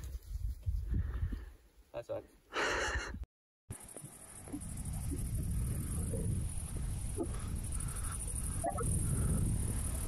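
Wind rumbling on the microphone, the gust ahead of an approaching storm shelf cloud, with a few faint short calls over it. The sound drops out briefly about three seconds in.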